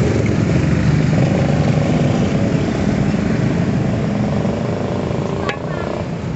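Motorcycle and car traffic on a busy street: a steady drone of engines passing close by, easing off slightly near the end.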